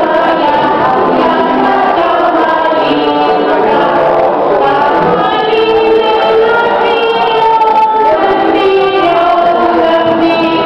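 A small group of young children singing a Russian song together, with electronic keyboard accompaniment.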